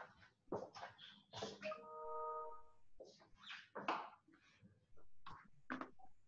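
Faint knocks and shuffling of a person moving about a small room. About two seconds in comes a steady tone of several pitches that lasts about a second.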